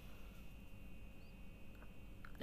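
Faint sounds of a spatula stirring and turning fried cabbage and capsicum in a kadai, a few soft small scrapes over quiet room tone.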